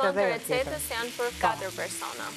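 Diced chicken, zucchini and rice sizzling as they fry in a deep pan and are stirred with a wooden spoon, under louder talking.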